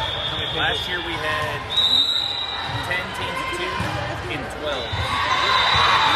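Indoor volleyball play on a hardwood gym court: a ball being struck and bouncing, with short impacts loudest about two seconds in, and sneakers squeaking on the floor, over chatter of voices echoing through the large hall.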